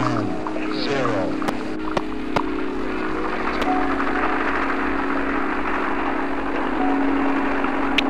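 Music soundtrack: a held, droning chord with a noisy rush swelling up under it from about two seconds in, and a few sharp clicks in the first couple of seconds.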